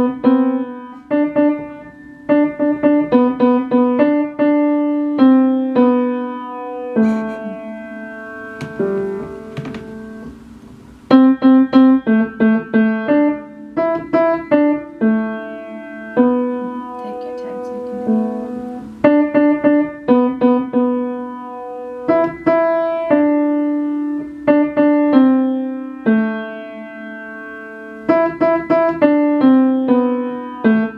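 A child playing a beginner solo on an upright piano: short phrases of quickly repeated notes and chords, with brief pauses between phrases and a softer passage of held notes about a third of the way in.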